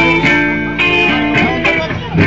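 Live band playing an instrumental passage: electric and acoustic guitars, with a saxophone line over them.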